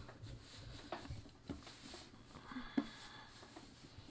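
Hands rolling yeasted flatbread dough into a rope on a floured wooden board: faint rubbing with a few soft taps, the sharpest a little before three seconds in.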